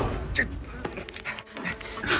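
A man panting and gasping in short, sharp breaths, a few about half a second apart, as he is attacked and grabbed by the throat.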